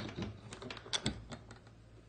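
Metal hook-and-eye door latch clicking and rattling as it is handled, a quick irregular run of about half a dozen sharp clicks, the loudest about a second in.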